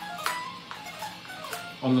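A few soft single notes picked on an Epiphone electric guitar, each ringing briefly, with light clicks from the strings.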